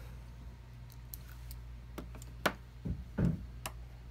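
Faint scattered clicks and light taps from small smartphone parts and a tool being handled during disassembly: about half a dozen sharp ticks and two duller knocks about three seconds in, over a steady low hum.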